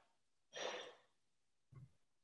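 A person's brief breathy exhale, like a short sigh, about half a second in, followed by a faint short sound near the end.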